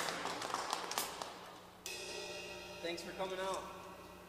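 Audience applause dying away between songs at a small live show. About two seconds in, a sudden sustained ringing from the band's instruments starts and holds over a low steady amplifier hum. A man's voice comes in briefly near the end.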